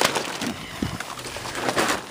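Footsteps crunching through dry leaf litter and twigs, with irregular crackles and rustles close to the microphone and a louder rustle near the end.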